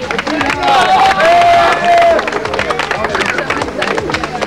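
Small outdoor crowd clapping, with voices over it and one long drawn-out call from about a second in.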